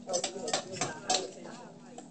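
A metal utensil clinking against a stainless saucepan while vegetables are stirred in it, a few sharp clinks in the first second or so, with low voices underneath.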